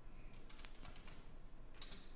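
Faint computer keyboard keystrokes: a handful of separate taps, then a quick cluster near the end, as a word is typed into a search field.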